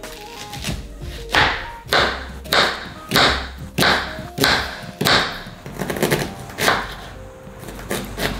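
Kitchen knife chopping a red onion on a plastic cutting board, a run of evenly spaced taps a little under two a second, over background music.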